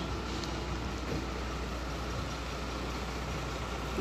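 A car engine idling: a steady low hum that holds even throughout.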